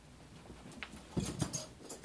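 Pets' paws thumping and scratching on carpet as a cat and dog scuffle in play: a quick run of soft thumps and scratchy clicks starting a little under a second in, loudest halfway through.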